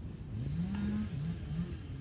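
A motor vehicle's engine revving up, rising in pitch for most of a second, easing off, then rising briefly again.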